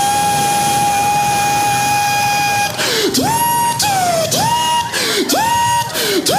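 A man vocally imitating a bus wheelchair lift into a microphone: one long, steady mechanical whine, then about three seconds in, four short rising whines in a row.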